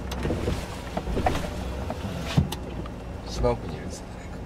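Steady low hum of a car's engine and tyres heard from inside the moving cabin, with a few brief voices.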